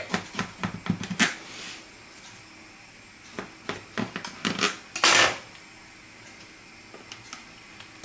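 Knife cutting a piece out of a baked cake in its baking dish: a run of light clicks and taps as the blade meets the dish, and a longer scrape about five seconds in.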